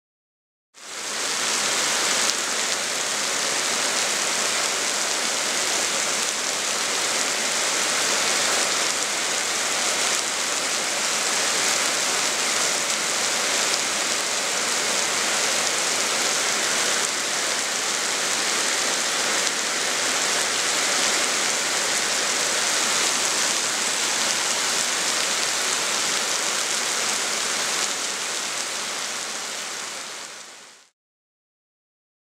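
Heavy rain falling steadily, a dense even rush that fades in about a second in and fades out at the end.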